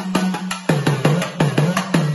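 A small rope-tensioned drum struck with a stick in a quick rhythm of about six or seven beats a second, its pitch dipping and rising between strokes in the second half, under a woman's held sung note.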